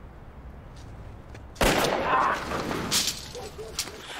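A sudden loud burst of noise from the TV show's soundtrack about a second and a half in, a blast or clatter lasting about a second and a half, with a second sharp hit about three seconds in.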